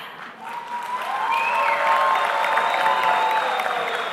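Audience applauding in a large hall, the clapping building up over the first second and then holding steady, with a few held musical tones sounding underneath.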